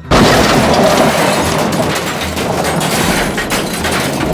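A train crash sound effect: a sudden loud crash at the start, followed by a long clattering, breaking din of wreckage.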